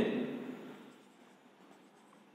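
Felt-tip marker writing on a whiteboard: faint strokes and rubbing. A man's voice trails off at the very start.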